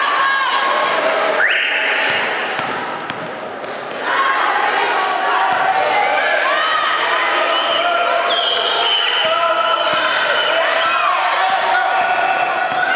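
A basketball being dribbled on a sports-hall floor, its bounces heard through the loud chatter and calls of a crowd of children in a large, echoing gym.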